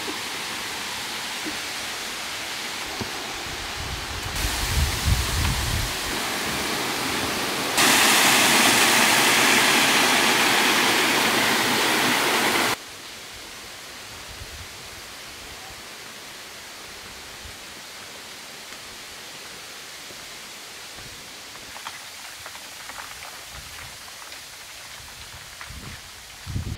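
Steady rushing outdoor noise in several cut-together stretches, with some low thumps around five seconds in, much louder from about eight to thirteen seconds in, then far quieter with a few faint clicks.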